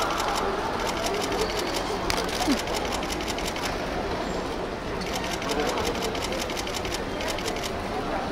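Camera shutters firing in fast bursts of clicks, several at once, pausing briefly about four seconds in.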